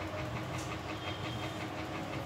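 Steady background machine hum, with faint, rapid, regular ticking running through it.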